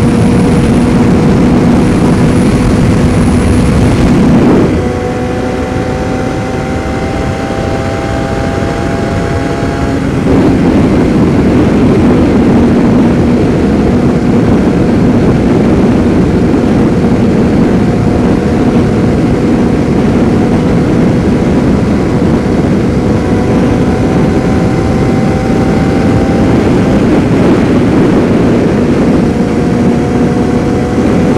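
Yamaha FZR600R's inline-four engine running at road speed, with wind noise. About four seconds in the sound drops back and the engine note climbs slowly. Around ten seconds in it returns louder and holds steady.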